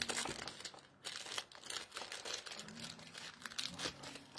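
Crinkling of plastic packaging handled in the hands while rings are taken out: a run of short, irregular crackles.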